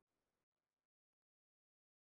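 Near silence: a very faint hiss that cuts out within the first second, then dead digital silence.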